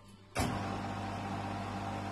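Electric motor of a small lathe switching on suddenly about half a second in, then running with a steady hum as it spins a willow cricket bat blank.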